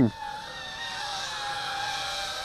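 Eachine Racer 180 tilt-rotor racing drone in flight, its 2205 2350 kV brushless motors and propellers giving a steady whine that slowly falls in pitch.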